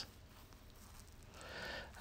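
Near silence, then a faint short hiss lasting about half a second near the end.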